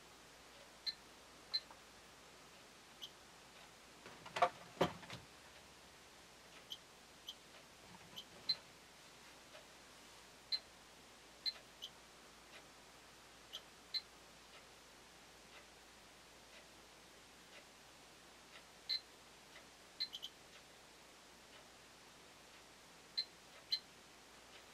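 Geiger counters clicking and beeping at random, irregular intervals, roughly one short high blip a second, while they sit under a switched-on UVC lamp. A couple of sharp knocks come about four to five seconds in.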